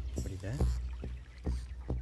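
Small aluminium boat on a river: several light knocks and bumps on the hull with a little water movement, over a low steady drone.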